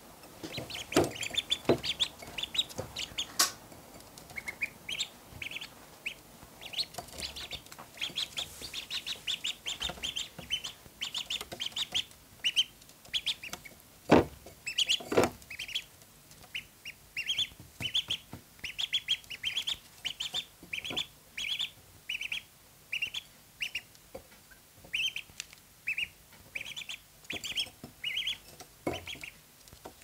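Ducklings peeping: short, high calls repeated one or two a second throughout, with a few sharp knocks, the loudest about halfway through.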